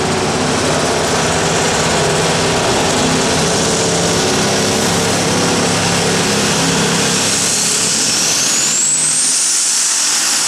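Unlimited Super Stock pulling tractor's turbocharged diesel engine running steadily at the line, then, near the end, a high whine rising sharply as the turbochargers spool up for the launch.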